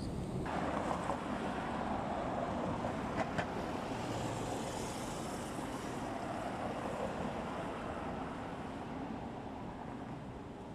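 City street traffic noise: a steady wash of passing cars that starts abruptly about half a second in, with two short clicks about three seconds in.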